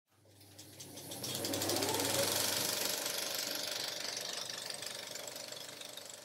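A fast mechanical rattle with a hiss, like a small machine running, swelling in over the first second and a half and then slowly fading.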